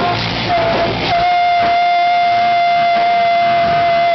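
Live rock band playing loud, with guitars and shouted vocals. About a second in, the drums and bass drop out and one high note is held steady for about three seconds.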